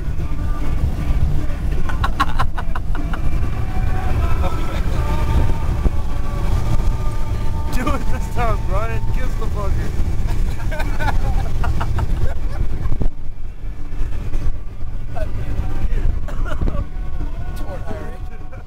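Steady low road and engine rumble inside a moving van's cabin, with people's voices over it.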